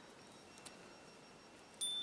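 Near silence until near the end, when a chime starts ringing: several clear, steady high tones that begin suddenly and hold.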